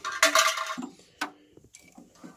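Vacuum cleaner attachments being handled in a sheet-metal tool compartment: a brief metallic clatter with a short ringing clink, then a sharp click just after a second in.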